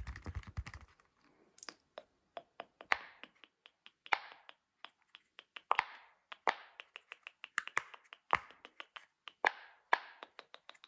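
Round silicone push-pop fidget toy being pressed bubble by bubble: a run of sharp, irregular pops, several a second, some louder than others. A brief low rumble sounds in the first second.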